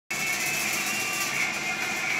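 Steady whirring hiss with a thin, steady high whine from an electric pedestal fan running.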